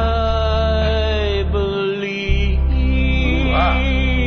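A slow ballad playing, with a singer holding long, drawn-out notes over a steady low bass that drops out briefly midway.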